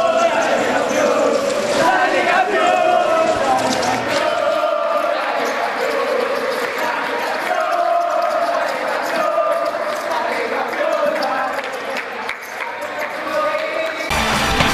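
A group of teenage boys chanting and shouting together in a victory celebration, many voices overlapping, with scattered thumps mixed in.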